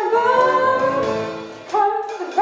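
Female voice singing a show tune with a small band behind it, one long held note that rises slightly, then a new short phrase near the end.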